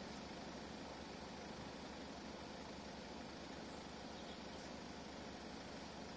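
A faint vehicle engine idling steadily, with a low even hum under a steady outdoor hiss.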